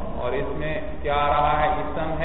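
A man's voice in a drawn-out, sing-song delivery with long held notes, like a chanted recitation, over a steady low hum.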